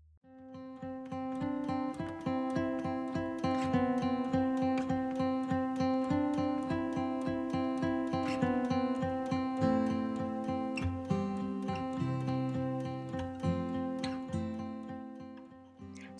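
Background music: an acoustic guitar piece of quick, evenly picked notes, starting a moment in and fading near the end.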